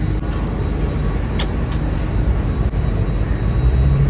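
Steady low rumble of outdoor background noise, with a few faint ticks about one and a half seconds in.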